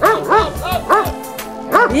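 A dog barking about five short, sharp times in quick succession, excited while running an agility course, over background music.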